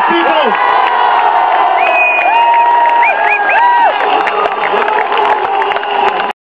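A large crowd cheering and shouting, with several held whistle-like calls rising above the noise.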